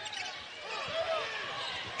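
Live basketball game sound from the arena floor: crowd murmur, with sneakers squeaking on the hardwood court and the ball bouncing.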